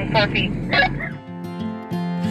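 A short laugh, then guitar music starts just over halfway through.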